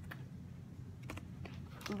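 A few light clicks and taps from hands handling small toy cards and packaging, over a low steady hum.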